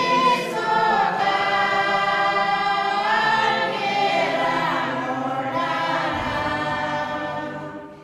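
A choir singing long, held notes, the sound fading away near the end.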